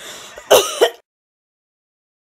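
A woman's short wordless vocal noise in two quick bursts, then the sound cuts off to dead silence about a second in.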